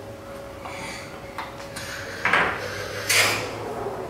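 Balloon-powered toy car released: air rushing out of the balloon's nozzle drives it along the table, heard as two short noisy bursts a little after two and three seconds in.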